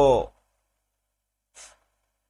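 A man's voice finishing a spoken word with a falling pitch, then a pause and a short, faint in-breath near the end.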